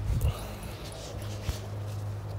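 A desi dog whining faintly while waiting for a piece of bread to be thrown, over a few knocks from hands handling the phone, with one sharp knock about one and a half seconds in.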